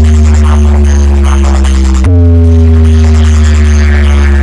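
A large stacked DJ sound-box rig playing very loud, deep sustained bass notes, each held for about three seconds with its pitch sagging slightly before it jumps to the next note about two seconds in.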